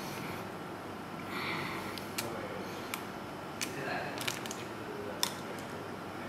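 Egg being separated by hand over a ceramic bowl: a handful of faint clicks and soft crackles as the cracked eggshell is pried apart with the fingers.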